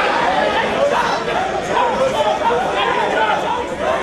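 Crowd of many voices talking and shouting over one another, loud and steady.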